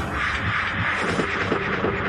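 A steady hiss of noise, like a line's static, over quiet background music.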